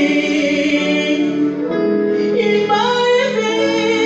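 A woman singing a gospel worship song into a microphone, holding long notes with vibrato.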